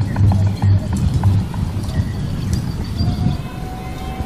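Film score music with a pounding low beat, about three pulses a second, and scattered sharp clicks over it.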